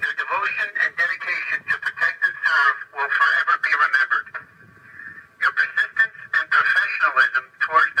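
A voice talking over a police car's radio, thin and tinny, with a short pause about four seconds in.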